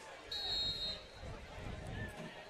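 A referee's whistle: one short, high, steady blast lasting about half a second, over faint crowd and field noise.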